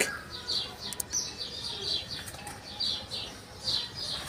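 A small bird chirping over and over: short, high chirps that each fall in pitch, about three a second.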